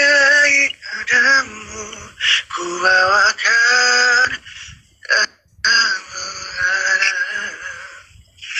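A man singing unaccompanied into a phone: phrases of long held notes with a slight waver, separated by short breaths and one brief pause about five seconds in, with the thin, compressed sound of live-stream audio.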